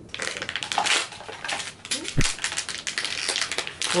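Plastic packaging crinkling and tearing as a blind-box figure is unwrapped by hand, a rapid crackle with a single low thump about halfway through.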